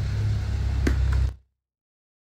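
Low, steady engine hum with a single sharp click a little under a second in; the sound cuts off abruptly to dead silence at about a second and a half.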